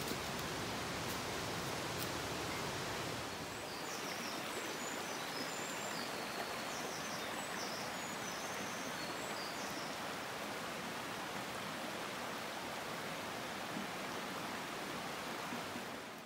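Shallow mountain stream running over rocks: a steady rush of water, with a few short high chirps in the middle.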